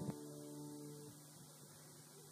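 The last chord of a hymn's guitar accompaniment ringing out and fading away within about a second, with a short click near the start. Then a faint steady hum.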